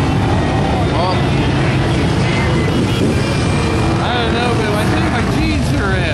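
Truck and ATV engines running steadily in a dense crowd, with many voices shouting and chattering over them.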